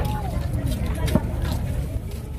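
Background voices over a steady low rumble, with a few short knocks of a cleaver on a fresh tuna and a wooden chopping block, the sharpest about a second in.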